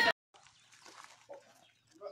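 Near silence after the speech cuts off, with a few faint, brief sounds about a second in.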